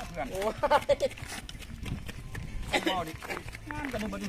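People talking, with short knocks and scrapes from a hoe working the soil between their words.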